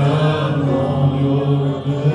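Worship singing with musical accompaniment, voices holding long sustained notes.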